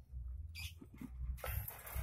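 Lovebirds giving short, high squeaks: a brief one about half a second in, then a louder, scratchier burst in the second half, over a low handling rumble.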